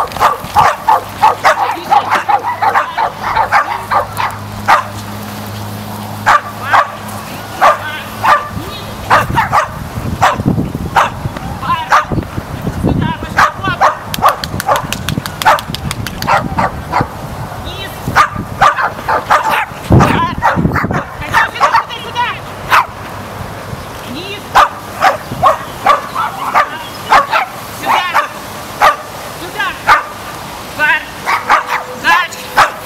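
A dog barking over and over, in quick runs of short, sharp barks with brief gaps between them.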